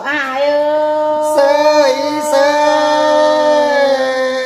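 A solo voice singing a Tây Bắc Thai folk song, holding one long drawn-out note that dips briefly in pitch about a second and a half in, then steadies again.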